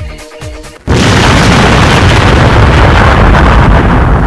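Electronic dance music, broken off about a second in by a sudden, very loud explosion that carries on as a long, noisy blast for several seconds.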